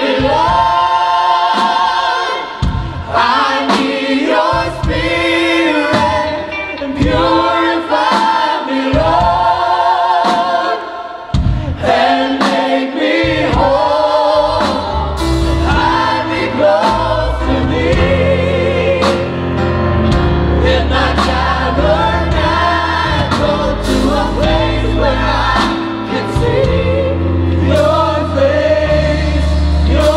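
A worship team singing together in harmony with a live band. The low end is thin and broken at first, and about halfway through the bass and drums come in fully and the band plays steadily under the voices.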